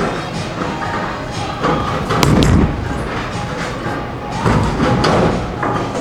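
Background music playing in a bowling alley, with a heavy thud and clatter from bowling about two seconds in and a lower rumble near the end.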